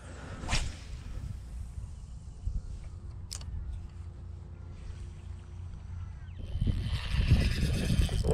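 A light spinning rod cast with a quick swish about half a second in, under a steady low rumble. From about six and a half seconds a Shimano Stradic 2500 spinning reel is cranked, giving a louder whirring hiss as line is wound in.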